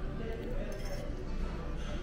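Busy restaurant dining-room background: indistinct chatter from other diners over quiet background music, with a few light clinks of tableware.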